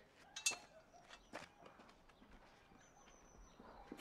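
Faint background ambience of a town street in a film scene: a few scattered soft knocks and clicks in the first second and a half, and a faint thin high chirp about three seconds in.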